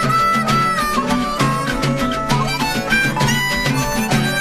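Rock band playing an instrumental passage live: drum kit and bass under a high sustained lead line that bends and wavers in pitch.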